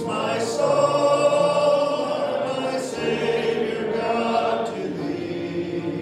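A congregation singing a hymn together, holding long notes.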